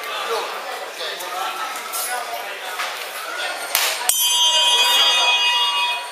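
A ringing match-start signal sounds about four seconds in and holds steady for about two seconds, over a crowd talking.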